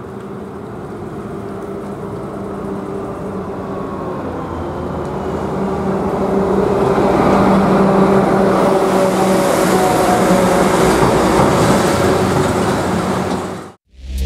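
Engine of an unseen motor vehicle running and drawing closer, growing louder over the first half and then holding steady before cutting off abruptly near the end.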